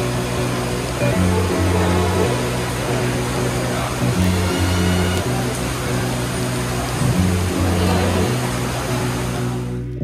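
Background music with a bass line that moves between low notes, over the steady hiss of heavy rain. Both fade out just before the end.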